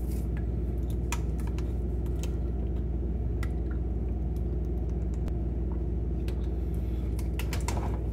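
A steady low hum that starts suddenly, with scattered light clicks and crinkles of a plastic water bottle being handled and drunk from.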